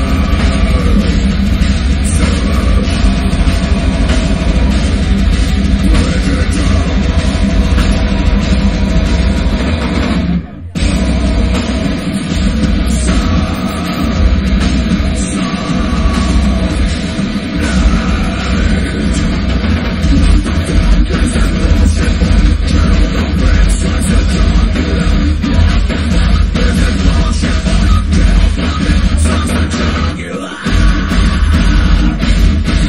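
Live heavy metal band playing full-on, with drum kit and guitars, heard close to the drums. The whole band stops dead for a moment a little over ten seconds in, then comes straight back in.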